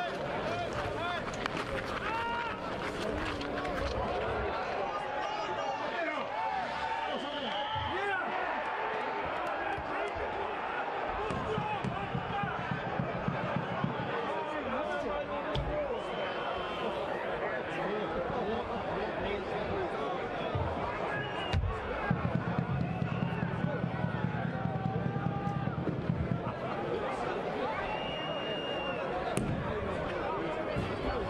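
Rink ambience at an outdoor bandy match: many distant voices of spectators and players, with scattered knocks from sticks and ball on the ice. Two brief high whistle tones come through, one early and one near the end.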